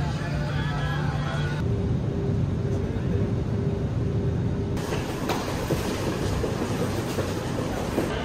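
Steady low rumble inside an airliner cabin, with a faint tone repeating about three times a second. It cuts off sharply about five seconds in, giving way to the busier, echoing bustle of an airport terminal walkway with small clicks and knocks.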